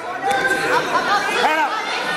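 Several voices shouting and calling out at once in a large gym hall, overlapping, with short rising-and-falling yells.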